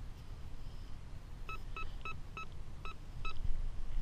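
A handheld metal-detecting pinpointer beeping about six times in quick, short blips as it is probed near the hole, signalling a metal target close by.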